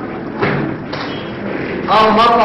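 A single thump about half a second in, over steady hiss from the old videotape; a voice starts speaking near the end.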